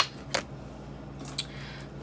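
A tarot deck being handled and set down on a glass tabletop: a sharp click at the start, another about a third of a second later, then faint taps and a brief soft rustle of cards near the end.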